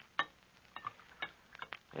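A handful of faint, short clicks and light taps spread through, a few with a brief ring, like glass or small objects being handled on an old recording.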